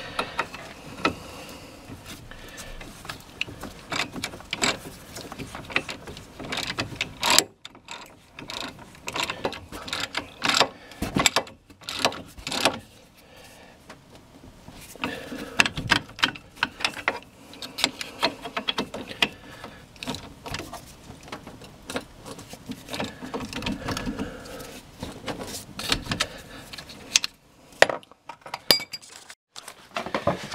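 Socket ratchet clicking in quick runs with metal tool clatter as bolts are tightened on a front brake caliper assembly, broken by a few short pauses.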